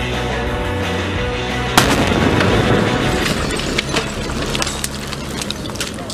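A cartoon TNT explosion sound effect over steady background music: a sudden blast about two seconds in, followed by crackling that fades over the next few seconds.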